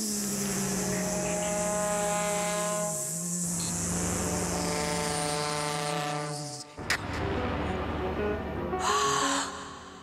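Contemporary vocal and ensemble music: a woman's long held sung notes over a low sustained tone, breaking off suddenly about seven seconds in, followed by a noisier passage and a short sliding vocal sound near the end.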